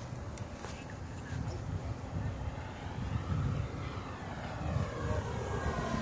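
Radio-controlled model airplane flying a low pass, its motor sound sweeping and growing louder as it comes near, over low wind rumble on the microphone.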